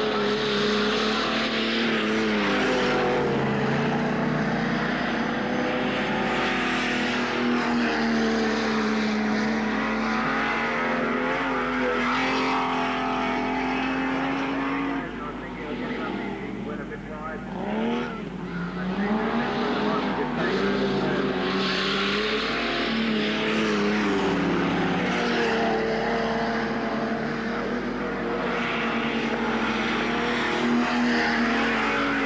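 Racing saloon car engines running hard on a dirt track, their pitch rising and falling as the cars lap. It eases off briefly about halfway through.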